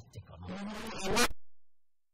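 Laughter, rising to a loud peak about a second in, then the sound cuts off abruptly to dead silence.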